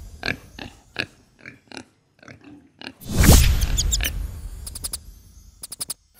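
Edited-in cartoon sound effects: a series of short pig oinks and grunts, then about three seconds in a loud magic whoosh with sparkly chimes, and a quick run of clicks near the end.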